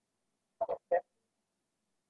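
A girl's brief two-beat chuckle about half a second in, two short throaty voice sounds heard over a video call.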